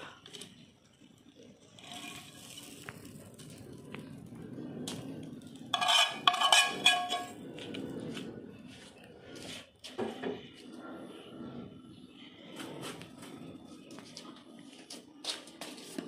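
Kitchen clatter of a serving utensil and dishes as food is plated, with one loud ringing clatter about six seconds in and scattered clicks. Voices murmur faintly underneath.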